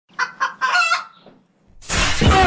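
A rooster crowing: two short notes and then a longer drawn-out one. Just before the end, a sudden loud noisy rush cuts in.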